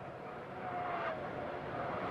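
Race trucks' engines running on the track, heard faintly as a steady noise, with one engine tone dropping in pitch about half a second in.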